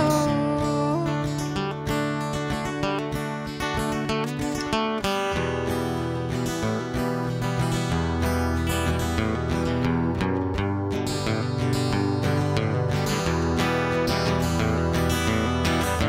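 Solo acoustic guitar strummed in a steady rhythm through an instrumental passage of a song, with no singing over it.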